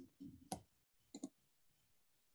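A few sharp clicks in near silence: one at the start, the loudest about half a second in, and a quick double click just past one second.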